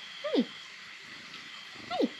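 A cat meowing twice, two short calls falling in pitch, one near the start and one near the end.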